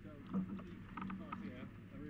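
Indistinct chatter of several people talking among themselves, no words clear.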